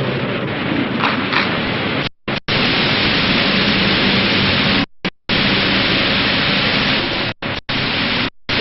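Loud, steady hiss of recording static, cutting out abruptly to silence three times for a fraction of a second each.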